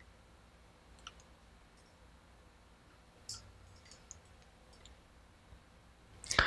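Near silence broken by a few faint computer mouse clicks, scattered and irregular, the one about three seconds in the loudest.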